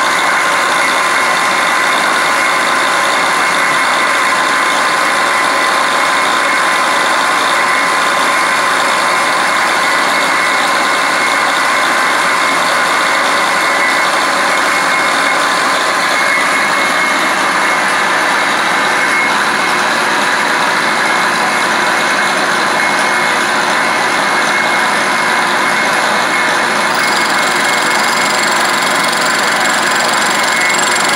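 Milling machine running steadily under power, its cutter taking a pass on a scope ring mount: a constant mechanical noise with a steady whine.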